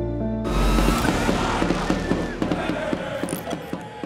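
The music's held chord stops about half a second in and is replaced by a sudden hiss-filled swell with rapid, irregular mechanical clicking, like a ratchet, that gradually fades away: a logo-reveal transition sound effect.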